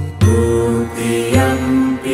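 Devotional music with a chanted mantra: long held sung notes that change pitch about once a second over a steady low drone.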